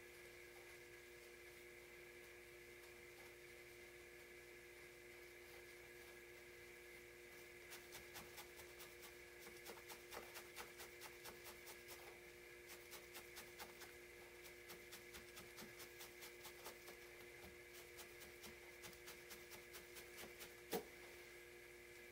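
Faint, quick, rhythmic pokes of a felting needle stabbing through wool into the work pad, a few a second, starting about a third of the way in and stopping shortly before the end, over a steady low background hum.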